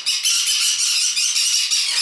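A flock of green-cheeked conures screeching continuously in rapid, overlapping calls, several a second, without a break. This is loud flock calling from newly arrived birds.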